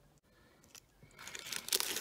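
A small clear plastic zip bag crinkling as hands pick it up and handle it. The crinkling starts a little after a second in and grows louder.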